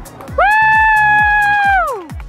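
A loud, high-pitched yell held on one note for about a second and a half, sliding down at the end, like a spectator cheering a runner home. Background music with a steady beat runs under it.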